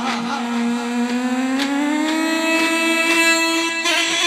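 A long metal end-blown flute playing one held note that slides slowly upward between about one and two and a half seconds in, then holds steady.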